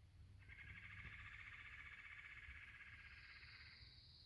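Faint, steady trill of a shoreline animal call, lasting about three seconds, with a second, higher-pitched trill starting near the end and overlapping it.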